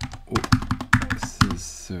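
Computer keyboard being typed on: a quick, uneven run of sharp key clicks as a command is entered.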